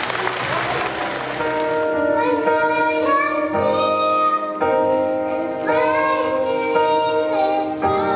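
Applause dying away in the first second or two, then a child singing a slow melody over a sustained instrumental accompaniment.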